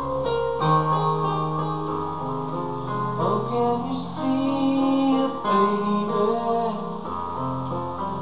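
Electronic arranger keyboard playing an instrumental passage of a slow ballad: held chords over a steady bass line, with a melody that slides between notes about three seconds in.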